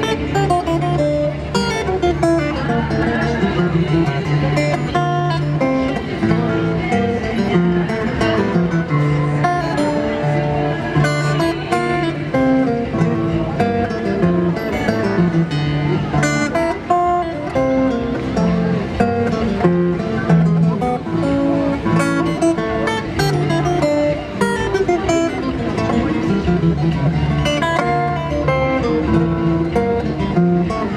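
Solo acoustic guitar played fingerstyle, with plucked melody notes over sustained bass notes, playing continuously.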